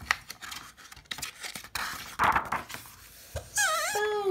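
A picture-book page being turned by hand: paper rustling with scattered small clicks of handling, rising to a denser rustle about two seconds in. A woman's voice starts near the end.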